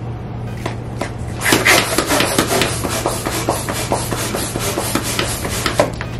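Hand balloon pump worked with quick strokes, ten pumps in all, air rushing through it as it inflates a 9-inch balloon. The pumping starts about a second and a half in, after a few light clicks as the balloon is fitted onto the nozzle.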